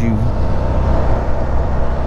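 A 2010 Can-Am Spyder RT Limited's Rotax V-twin engine running steadily while cruising at about 35 mph in a semi-automatic SM5 gear, mixed with steady wind and road noise.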